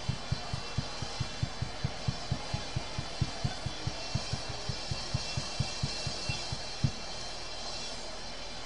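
A bass drum beating a fast, even pulse of about six low thumps a second, with a faint steady wash of noise behind it. The drum stops about seven seconds in.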